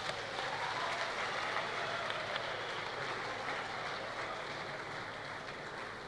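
Large audience applauding: a steady, even clatter of many hands clapping that slowly eases off.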